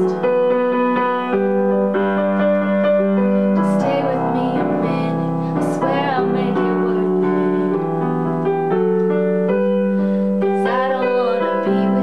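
Yamaha digital piano playing sustained chords that change every second or so, with a woman singing over it.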